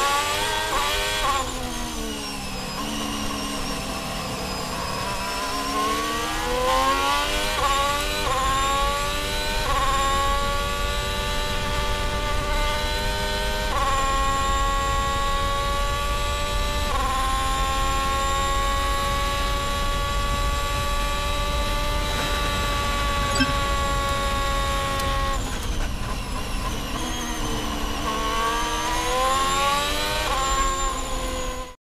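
Onboard sound of an Alfa Romeo Formula 1 car's Ferrari 1.6-litre turbocharged V6 hybrid engine: the pitch drops through downshifts at the start, climbs through quick upshifts, then holds a long, steady high note at full throttle down a straight. Near the end the pitch falls again under braking and rises as it accelerates out of the next corner.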